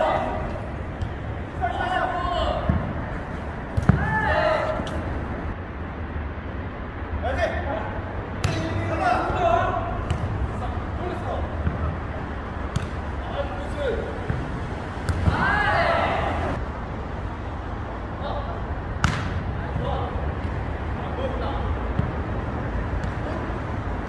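Jokgu rally: players' short shouted calls, with several sharp smacks of the ball being kicked and bouncing off the court, over a steady low rumble.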